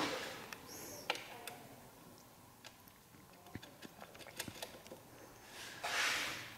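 Faint, scattered light clicks and taps of small parts being handled as a motorcycle's plastic rear brake fluid reservoir is refitted to its mount, with a brief soft rustle near the end.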